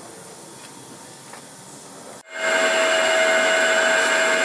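A faint steady hiss, then a little over two seconds in, after an abrupt break, a much louder steady whine with several held tones: the Prototrak DPM3 CNC mill's spindle turning an end mill that is cutting a power slot into a cast-iron flathead Ford engine block.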